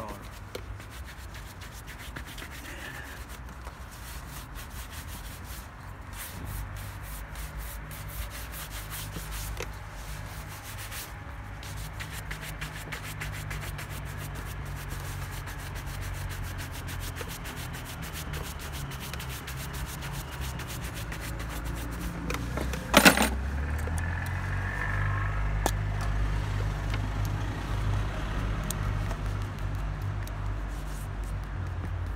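Bristle shoe brush rubbing over a polished black leather shoe in quick back-and-forth strokes, buffing it to a shine. A single sharp knock cuts through about three-quarters of the way in.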